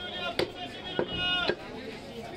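Butcher's cleaver chopping beef on a wooden block: three sharp strikes about half a second apart.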